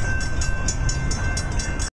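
Outdoor city street noise: a steady low rumble of traffic with wind buffeting the microphone and a faint steady high tone, cutting off suddenly just before the end.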